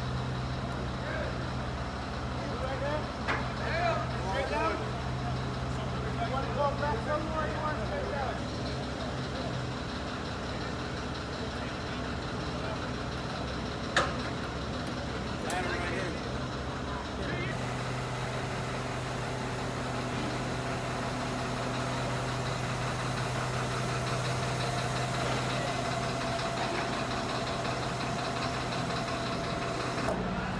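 Heavy diesel engine running steadily, with indistinct voices calling out a few seconds in and a single sharp knock near the middle.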